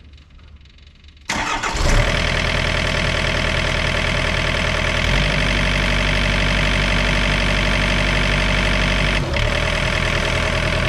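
Yanmar VIO50-6 mini excavator's diesel engine starting about a second in, right after the fuel filter change and bleeding air from the fuel system. It catches quickly and settles into a steady idle.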